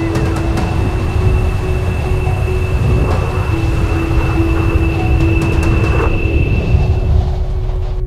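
Film sound design of a storm: a loud, low rumbling rush of wind with a steady high tone and a lower held tone over it. The high tone stops about a second before the end.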